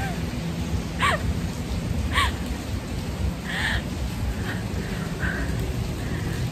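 Heavy rain pouring steadily, a dense hiss with a deep low rumble underneath.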